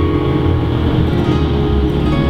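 Solo steel-string acoustic guitar in an instrumental passage, chords and low bass notes ringing on between strums.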